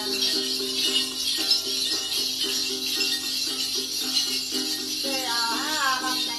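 Then ritual music: a bunch of small jingle bells (chùm xóc nhạc) shaken steadily over repeated plucked notes of a tính lute, with a voice singing a short phrase near the end.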